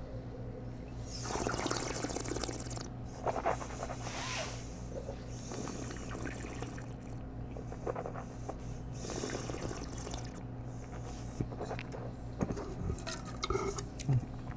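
A mouthful of red wine being tasted: several hissing slurps of air drawn through the wine over the tongue, with swishing in between.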